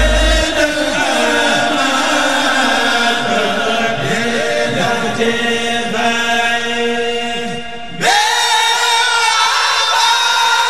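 Men chanting a Senegalese Sufi xassida together, unaccompanied, with strong pitched lines. About eight seconds in, after a brief drop, a new phrase starts at full voice.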